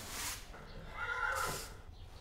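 A horse whinnies once, a wavering call lasting under a second, about a second in. A short swish of noise comes just before it, at the start.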